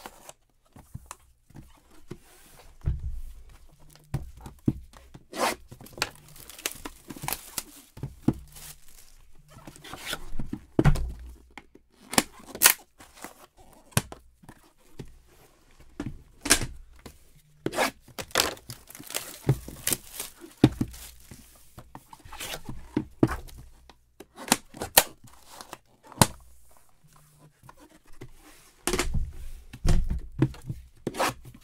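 Sealed boxes of trading cards being unwrapped and handled: plastic wrapping tearing and crinkling, with many sharp clicks and knocks as boxes and lids are picked up and set down.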